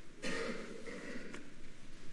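A person clearing their throat: a sudden rough burst about a fifth of a second in that trails off over the next second or so.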